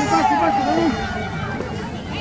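Spectators talking and calling out on the sideline: overlapping voices and a drawn-out shout in the first second, easing into quieter chatter.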